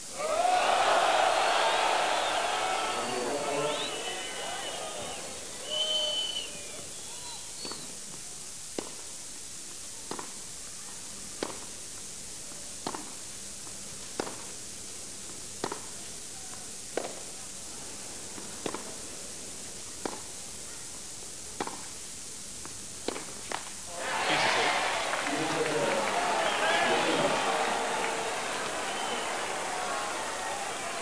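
Tennis rally on a clay court: about a dozen sharp ball strikes, roughly one every second and a half, over a hushed stadium crowd. The crowd is loud at the start, and near the end a loud crowd roar rises as the point ends.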